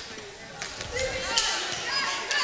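A basketball being dribbled on a hardwood gym floor, a few sharp bounces, over the murmur of spectators.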